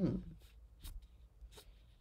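A brief hummed 'hmm', then two faint sharp clicks about three-quarters of a second apart, from a computer mouse as a web page is scrolled, over quiet room tone.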